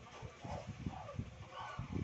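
Faint background animal calls: three short calls that rise and fall in pitch, over soft low knocks.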